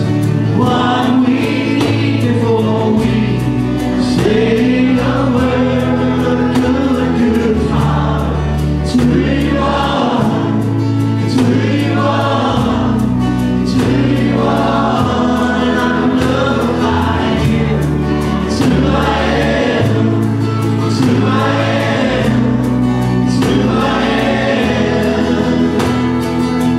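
Church choir singing a gospel worship song with a live band of acoustic guitars, keyboard and drums, over a sustained bass line that moves to a new note every second or two.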